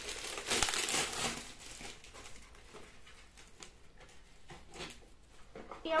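Crinkling of packaging as small Christmas decorations are taken out and handled, dense for about the first two seconds, then sparser and fainter.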